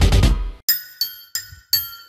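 A loud, dense sound dies away in the first half second. Then a small spanner strikes a row of L-shaped socket wrenches used as a makeshift metallophone: four sharp, ringing metallic notes of a tune, a little under three a second.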